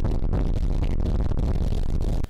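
Wind buffeting the microphone of a motorboat under way, a loud steady low rumble with crackle, with the boat's engine and the water under it.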